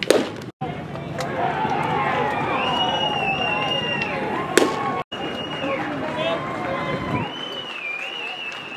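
A baseball popping into a catcher's mitt twice, about four and a half seconds apart, each a single sharp smack, over steady background voices.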